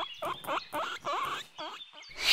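Guinea pig squeaking: a quick run of short, pitch-bending calls, about four a second.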